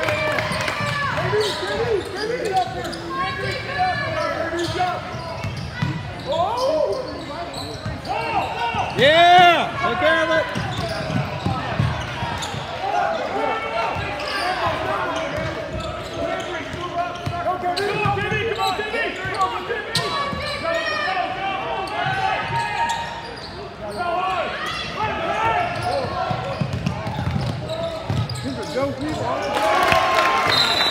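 Basketball game sounds in a gymnasium: overlapping shouts and chatter from the bench, coaches and crowd, with a basketball bouncing on the hardwood. One loud drawn-out yell stands out about nine seconds in.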